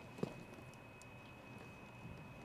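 A few faint clicks and taps from a small two-digit combination lock being set and tried, the clearest click about a quarter second in, over quiet room tone with a faint steady high whine.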